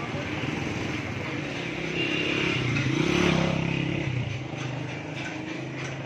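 Motorcycle engine running close by, getting louder to a peak about three seconds in and then fading as it moves past.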